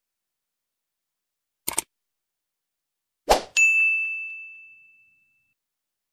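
Sound effects of a subscribe-button animation. A quick double click comes a little under two seconds in, then another sharp click, then a single bell ding that rings out and fades over about a second and a half.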